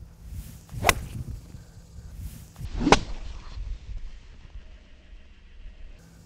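A golf iron striking a ball on a full swing: one sharp crack about three seconds in, the loudest sound, preceded by a fainter sharp click about a second in.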